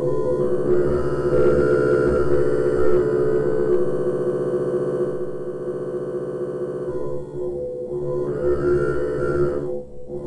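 Reason NN-XT sampler retriggering a sample very rapidly from the RPG-8 arpeggiator at a high rate, turning the loop into a granular-synth texture: a dense, steady chord-like tone made of fast repeats. It thins out about seven seconds in, swells again, then drops away near the end.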